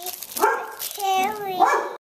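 Three short, high-pitched vocal sounds in quick succession, each held briefly at a steady pitch.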